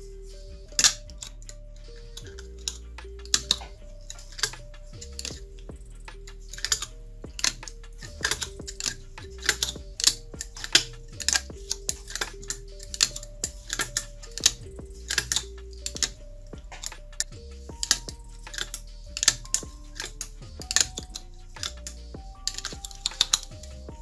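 Copper magnet wire being hand-wound into the slots of an angle grinder armature: sharp, irregular clicks and ticks as the wire is pulled through and laid in the slots, over background music with a simple melody.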